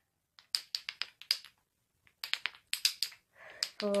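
Wooden Jacob's ladder toy, flat blocks joined by ribbons, flipping down the chain. It makes a quick run of light wooden clacks about half a second in and a second run about two seconds in.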